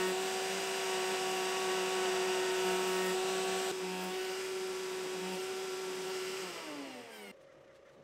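Router in a router table running at full speed with a steady high whine as a template bit trims hard ironbark. About six and a half seconds in it is switched off and winds down, its pitch falling away.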